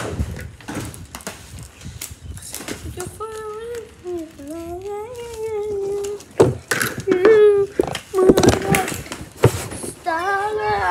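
A child's voice calling out in long, sliding sing-song tones, over a scatter of sharp knocks and taps.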